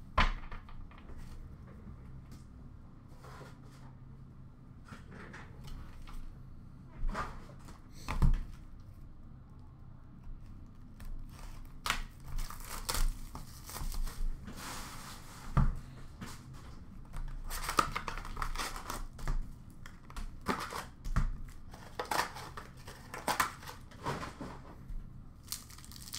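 Foil wrapper of an Upper Deck hockey card pack crinkling and tearing as it is handled and ripped open by hand, mostly in the second half. A few dull knocks come in between, about 8 and 15 seconds in.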